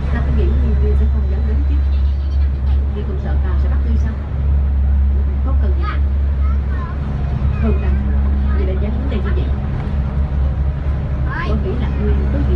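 SuperDong high-speed passenger ferry's engines running with a steady low drone while under way, with people's voices talking over it.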